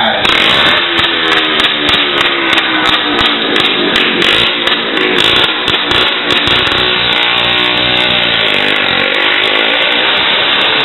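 Motorcycle engines revving as riders circle the wooden Wall of Death drum, the engine pitch rising and falling.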